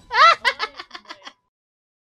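A woman giggling in short, high-pitched bursts that stop abruptly after about a second and a half.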